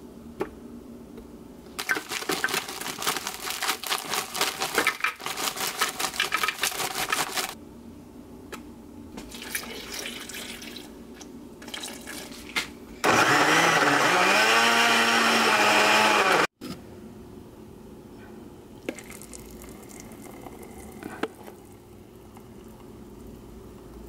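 Countertop blender blending a frozen-fruit protein smoothie: the motor spins up with a rising whine, runs loud and steady for about three and a half seconds, then stops abruptly. Before that, several seconds of rustling and clatter as ingredients are put into the jar.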